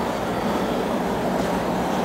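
A steady low hum under an even rushing noise, unchanging throughout, with no distinct knocks or clicks.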